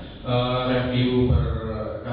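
A man's voice through a hall's loudspeakers, speaking in long, drawn-out phrases at a fairly level pitch, close to chanting.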